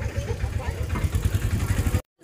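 An engine idling with a low, rapid, even pulse, under faint voices.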